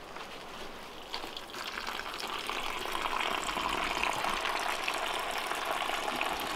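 Rainwater from a gravity-fed barrel running through PVC watering pipes just after the valve is opened: a steady rush of flowing water that grows gradually louder over the first few seconds, then holds.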